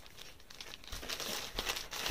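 Plastic zip-lock packaging bag crinkling and crackling as it is opened and handled.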